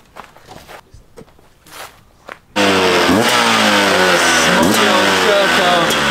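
Two-stroke enduro motorcycle engine, silent at first, then running loudly from about two and a half seconds in and being revved, its pitch sweeping up and down. A few faint clicks before it.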